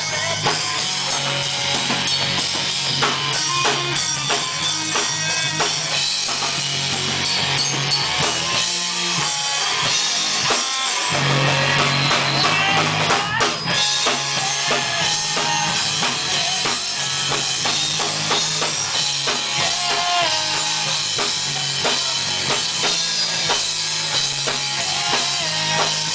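Live rock band playing loud: drum kit, distorted electric guitar and bass, with a singer's voice. The bass and low end drop out for a moment about ten seconds in, then the full band comes back in.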